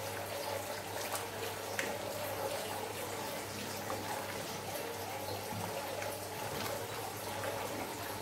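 Wet slime full of small foam beads squeezed and kneaded by hand in a glass bowl with liquid at the bottom: continuous wet squishing and squelching with small crackles.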